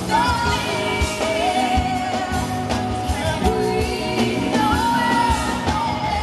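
A live pop song played through an arena sound system: a female lead singer holding long notes with vibrato over a band with a steady drum beat.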